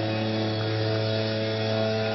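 Steady electric hum from the band's amplifiers, a low unchanging drone with several higher tones held over it while the instruments are not being played.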